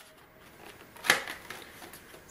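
Handling noise from a plastic instant camera being turned over in the hands: faint rubbing and light ticks, with a brief rustle about a second in.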